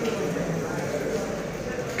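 Indistinct voices and room noise in a hard-walled hall, with what sounds like light footsteps on a hard floor.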